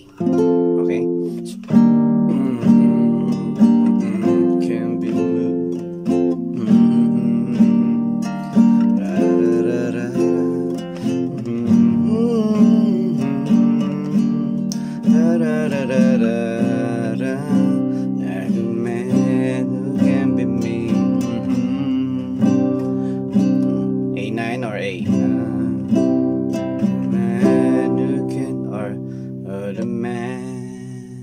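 Nylon-string classical guitar with a capo, strummed chord by chord through a song's bridge progression: a fresh chord every second or two, each ringing out and dying away before the next.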